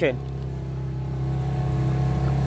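A small motorboat's engine running with a steady drone that grows slightly louder.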